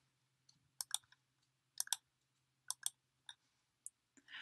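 Computer mouse clicks, several in quick pairs about a second apart, as a software menu and dialog are worked.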